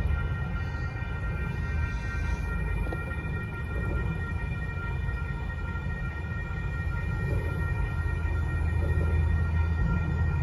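Low rumble of a Union Pacific mixed freight train moving away after clearing the crossing, with a steady high-pitched whine held over it.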